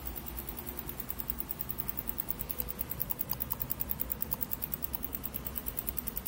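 Philips 14CN4417 CRT TV chassis ticking fast and evenly, about ten ticks a second, over a faint low hum. It is the 'tic-tic' of a faulty set that will not switch on properly.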